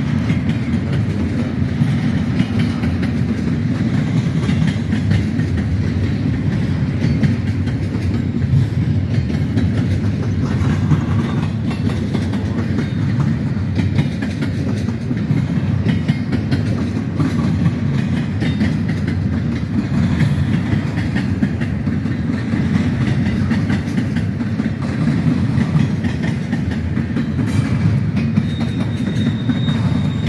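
Freight train of double-stack intermodal well cars rolling past at steady speed: a continuous low rumble of steel wheels on rail with clickety-clack over the rail joints. A thin high wheel squeal starts near the end.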